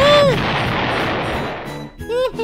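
Cartoon explosion sound effect for a car engine blowing up: a loud blast that fades out over about two seconds, opening with a short rising-and-falling tone.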